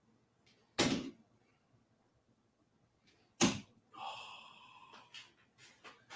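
Two steel-tip darts striking a miniature Winmau Dart Dock dartboard, two sharp thuds about two and a half seconds apart. A short ringing tone follows the second hit, and a few light clicks come near the end.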